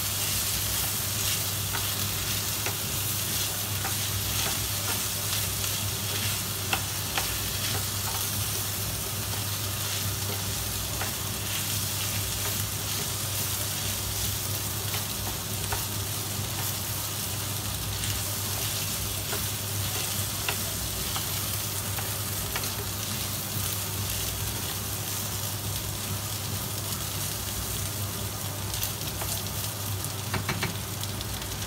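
Rice, chicken and peppers sizzling steadily in oil in an enamelled steel paella pan while a wooden spoon stirs and scrapes through them, with small clicks and an occasional sharper knock of the spoon on the pan. The rice is frying off before the stock is added.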